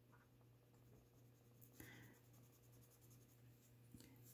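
Faint scratching of a colored pencil being worked over paper in small blending strokes, over a steady low hum.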